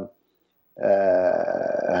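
A man's drawn-out hesitation vowel, a held 'eeh' at one steady pitch for over a second after a short silent pause, running straight into speech.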